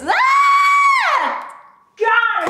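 A woman's single shrill shriek: it shoots up in pitch, holds steady for nearly a second, then slides down and fades out.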